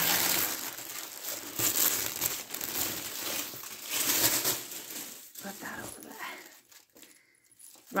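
Crinkly gold plastic wrapping being handled and pulled off a package, crackling for about five seconds before it dies down.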